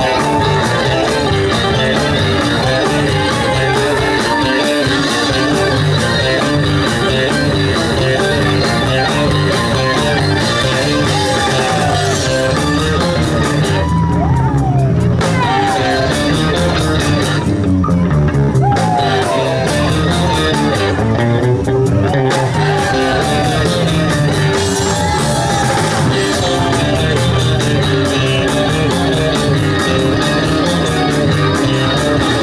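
Live ska band playing: a saxophone and trumpet horn section over electric guitar, bass and drums. A lead line with pitch bends runs through the middle.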